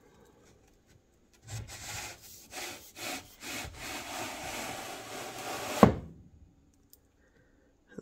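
A bookcase molding strip sliding along the notched edge of a laminated particleboard panel, scraping for about four seconds and ending in one sharp knock.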